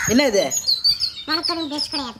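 Small birds chirping in the background, short high calls repeated throughout, under a man's speaking voice.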